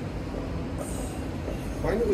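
Background noise of a crowded ward: a steady low rumble with faint murmured voices, and a brief hiss a little under a second in.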